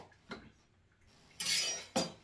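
A kitchen knife cutting a lemon in half: a faint tick near the start, then a short scraping cut about one and a half seconds in that ends with the blade clicking against the surface below.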